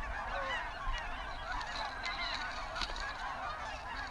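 A flock of Canada geese honking, a steady chorus of many overlapping calls.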